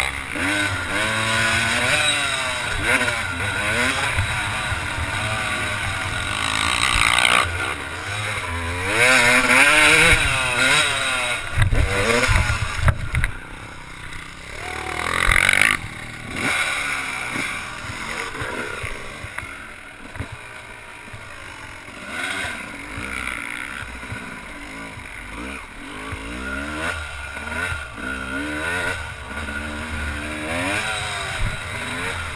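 Yamaha YZ250 two-stroke single-cylinder motocross engine revving up and down as the bike is ridden around the track, its pitch climbing and falling with each shift and throttle change. The engine is loudest in the first half, with a few low thumps about twelve seconds in, and runs quieter after that. Steady wind hiss sits over it.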